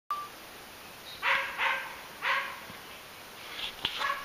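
A young squirrel-dog pup, about three and a half months old, gives three short, high-pitched barks in quick succession.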